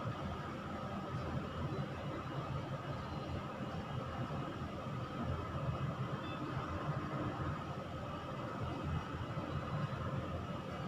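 Steady background room noise: an even low hum with hiss, unchanging throughout, with no distinct strokes or knocks standing out.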